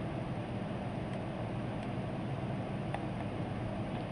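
Steady hiss and low hum of a desktop recording's microphone background noise, with two faint clicks, about a second in and about three seconds in.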